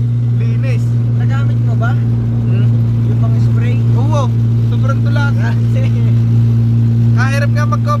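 Car engine and exhaust drone heard inside the cabin while driving: a loud, steady low hum at constant pitch, with no revving.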